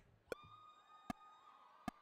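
A count-in before a song: three sharp clicks, evenly spaced about 0.8 s apart, over a faint steady tone that fades out after the second click.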